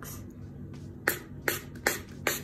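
Pump spray bottle of face mist spritzed three times in quick succession, starting about a second in, each spray a short sharp hiss.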